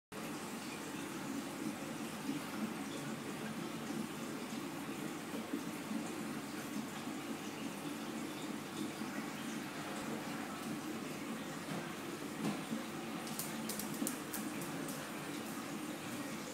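Steady rush of moving water from a reef aquarium's circulation, with a few light clicks about thirteen seconds in.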